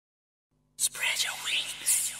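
Track intro: after about half a second of silence, whispered, breathy vocal sounds with quick sweeping rises and falls come in over a faint low synth drone.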